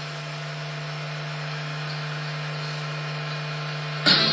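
Steady hiss with a constant low hum from the radio receiving setup during a silent gap in the decoded broadcast audio, between the announcement and the music.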